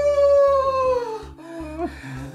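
A long, loud, drawn-out howl-like cry that holds one high pitch and then falls away about a second in, followed by shorter wavering cries, over a pulsing low bass.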